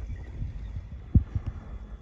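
Low wind rumble on an outdoor microphone with a few dull low thumps, the strongest about a second in and a softer one just after.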